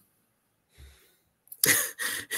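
A short, breathy, cough-like burst from a person about one and a half seconds in, after a near-silent pause.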